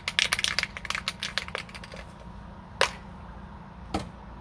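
Aerosol spray paint can being shaken, its mixing ball rattling rapidly inside for about two seconds, then stopping; a single sharp click follows about a second later and another near the end.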